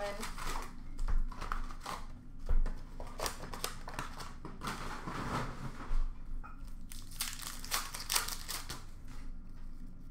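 A cardboard hockey-card retail box being opened and its foil-wrapped card packs crinkling and tearing open, in an irregular run of rustles and rips.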